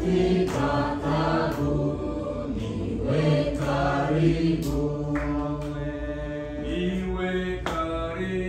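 Congregation singing a hymn together, voices holding long notes that move step by step.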